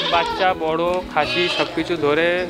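Goats bleating: two long quavering calls, with a third starting near the end.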